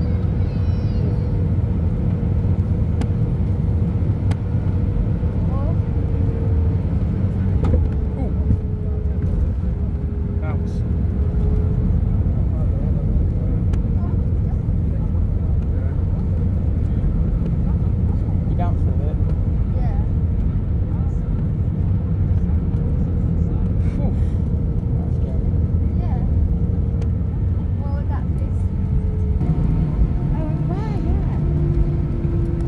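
Cabin noise in an Airbus A319 rolling out on the runway after landing: a steady, loud rumble of engines and wheels on the runway, with a faint steady tone above it.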